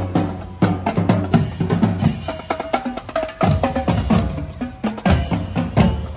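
Drum-led music with a fast, steady beat of bass drum and snare strikes.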